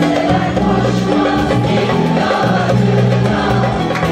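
Mixed amateur choir singing a Turkish pop song in unison, with held notes, accompanied live by a small Turkish ensemble of kanun, oud and violin.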